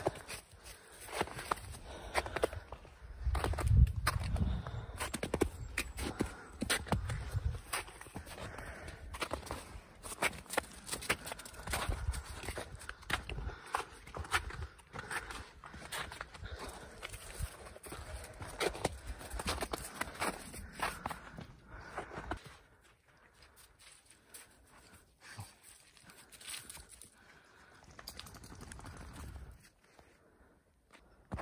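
Footsteps crunching through snow, a run of irregular crunches that stops about two-thirds of the way through. A low rumble on the microphone comes a few seconds in.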